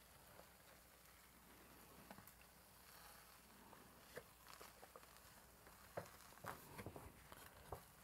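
Near silence, with a few faint soft paper rustles and ticks, mostly in the second half, as a sheet of printing paper is slowly peeled off a gel printing plate.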